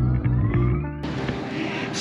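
Electronic background music with a rising sweep. About halfway through it cuts off, giving way to the steady hiss of a large hall's ambience.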